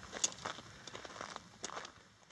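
Footsteps on gravelly, rocky desert ground: a few faint, irregular crunching steps.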